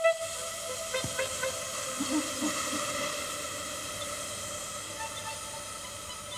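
A steady hiss like escaping steam, with a few soft plinks of water about a second in, over faint ringing tones that linger in the very long reverberation of an underground water cistern.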